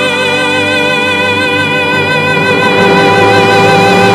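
Operatic tenor holding one long sustained note with a wide, regular vibrato, backed by a full symphony orchestra with strings.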